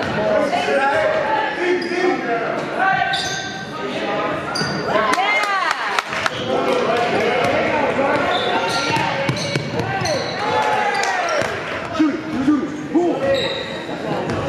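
Basketball being dribbled on a hardwood gym floor, with sharp bounces, sneakers squeaking on the court and voices on the court and in the stands, all echoing in the gym.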